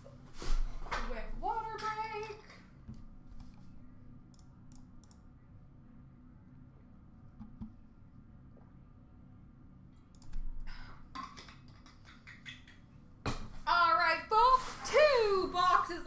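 A man speaking briefly at the start and again near the end. In between is a long quiet stretch of room hum with a few faint clicks.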